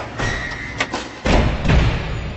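Logo-reveal sound effects: a series of heavy, booming impacts with a swishing sweep between them, the two deepest hits near the end, ringing out over a music sting.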